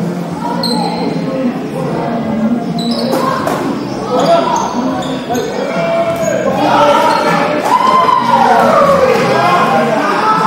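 Rubber dodgeballs hitting and bouncing on a wooden court, several sharp impacts in the first half, with players' voices calling across the hall. The voices grow loudest in the second half.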